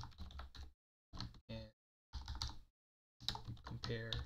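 Typing on a computer keyboard, the keys clicking in several short bursts with silent gaps between them.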